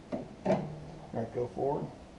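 A few short spoken words, with a light knock about half a second in.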